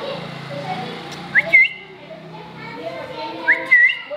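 Pet rose-ringed parakeet giving two quick rising whistles about two seconds apart, each ending in a short hook, over low background chatter.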